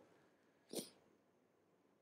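Near silence in a pause in the speech, with one brief soft breath or mouth sound from the speaker near the middle.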